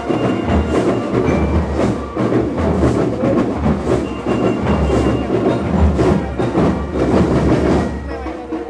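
School rhythm band (banda rítmica) playing drums: bass drums and other drums beating a steady rhythm, with a few short high ringing notes over them.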